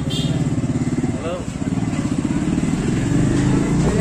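Motorcycle engine running close by, a steady low rumble with a fast, even pulse.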